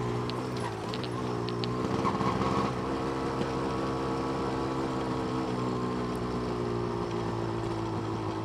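Yamaha DT200R two-stroke single-cylinder engine running at low, light-throttle revs while the motorcycle is ridden gently down a street. Its note dips slightly in the first second, picks up a little about three seconds in, then holds steady.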